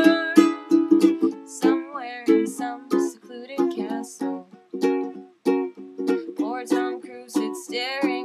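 Ukulele strumming chords in a steady rhythm, with a solo voice singing short phrases over it.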